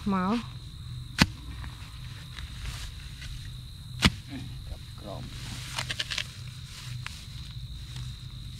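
Hands rustling through grass and weeds while pulling up plants, with a sharp click about a second in and a louder one about four seconds in, and a short burst of rustling near six seconds. A steady high tone runs underneath.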